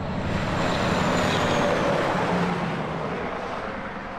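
A passing vehicle heard from a distance: a steady rushing noise that swells about a second in and fades away toward the end.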